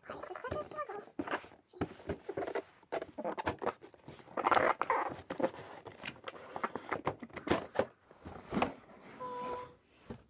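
A tight-fitting cardboard doll box lid is worked loose and pulled off: repeated scraping and rubbing of cardboard on cardboard, with small knocks and rustles as it slides free. A brief hummed tone comes near the end.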